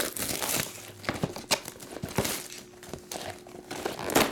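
Plastic shrink wrap being peeled and crumpled off a cardboard trading-card hobby box: irregular crinkling with many sharp little crackles.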